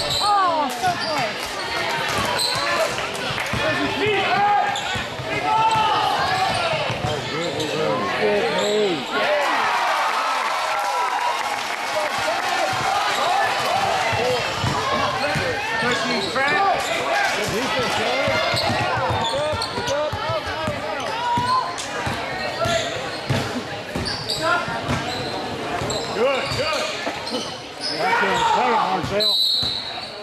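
Basketball game sounds in a gym: a basketball bouncing on the hardwood court amid steady crowd chatter from the bleachers, all echoing in the hall.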